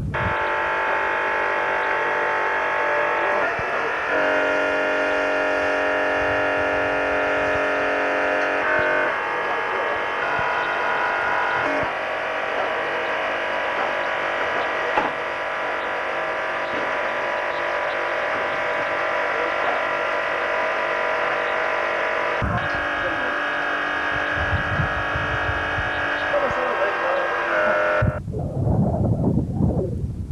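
Background music of sustained chords that change every few seconds. Near the end the music cuts off and low outdoor rumble takes over.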